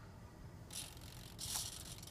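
A Dymond D47 micro servo whirring in two short bursts, a brief one about two-thirds of a second in and a longer one from about a second and a half, as it drives the model's ailerons.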